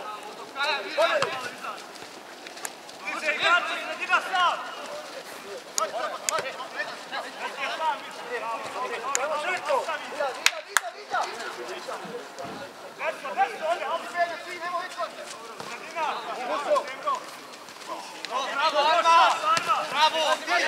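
Men's voices talking and calling out, loudest in stretches a few seconds in and near the end, with one sharp knock about ten seconds in.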